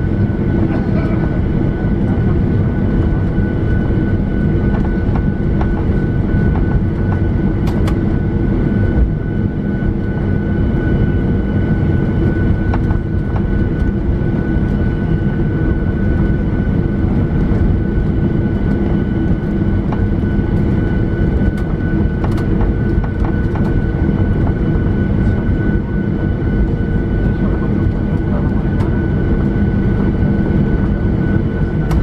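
Jet airliner cabin noise while taxiing after landing: a steady engine and airflow drone with a thin, steady high whine over it.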